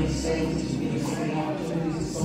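Live gospel band playing, with keyboards and sustained low bass notes, and voices over the music.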